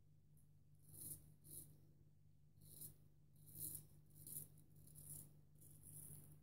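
Parker SRB shavette razor with a Shark half blade scraping through lathered stubble in short strokes: about seven faint, quick rasps.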